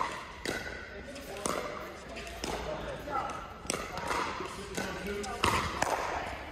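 Sharp, irregular pops of pickleball paddles striking balls, about eight in six seconds, each ringing briefly in a large indoor court, with voices murmuring underneath.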